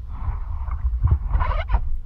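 Water sloshing and lapping against a camera held at the surface on a selfie stick, over a steady low rumble, with a rougher splash about a second and a half in.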